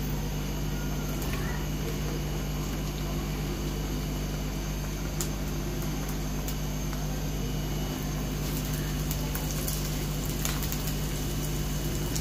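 A steady low hum with a faint hiss over it, and a few scattered light clicks.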